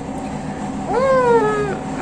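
A woman's closed-mouth 'mm-hmm' hum of tasting, one pitched sound about a second in that rises and then slowly falls.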